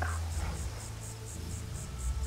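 Quiet outdoor film ambience: insects chirping in a quick, even rhythm of about four or five pulses a second over a low steady hum, with a brief soft rustle at the start.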